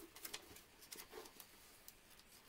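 Faint, scattered light clicks and rustles of snack packaging being handled on a table, mostly in the first second and a half.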